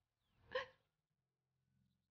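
A woman's single short sobbing gasp, a catch of breath while crying, about half a second in.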